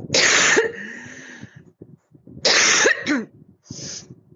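A person coughing: two loud, harsh coughs about two seconds apart, then a smaller one near the end.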